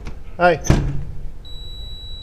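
A short knock, then a steady high electronic beep that starts about halfway through and keeps going: an entry-door release tone signalling that the door can be opened.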